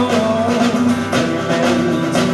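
Live band playing an instrumental passage of a song: strummed acoustic guitar, drum kit and electric guitar, with no singing.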